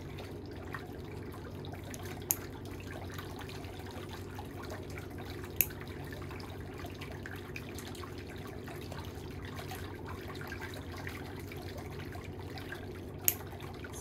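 Steel nail nippers snipping thickened, impacted toenails: three short sharp clips spread out, over a steady low background noise.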